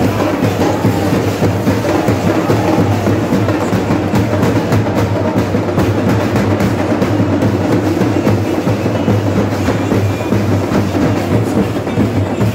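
Loud music carried by fast, dense drumming.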